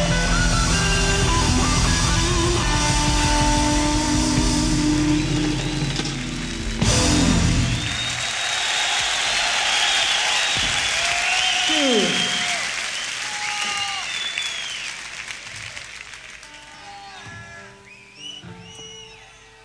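Rock band with electric guitars, bass and drums playing live, ending on a final hit about seven seconds in. The audience then applauds, cheers and whistles, and the noise fades away gradually.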